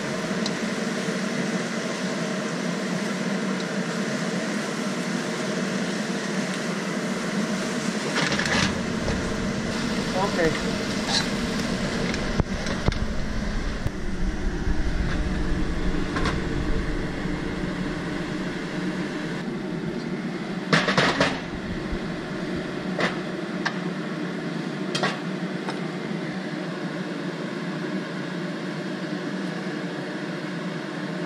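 A spatula scraping and knocking against a wok as scrambled eggs and scallops are stirred and scooped out, with a few sharper clatters near the middle. Under it runs a steady kitchen fan hum with several tones.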